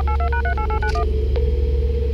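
Telephone keypad dialing tones: a quick run of about ten short two-tone beeps that ends about a second in, over the steady low hum of a car cabin.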